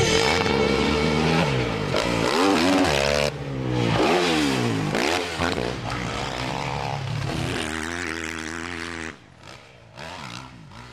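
Motocross bike engine revving up and down over and over, its pitch climbing and falling with each burst of throttle and shift. It drops away suddenly about nine seconds in.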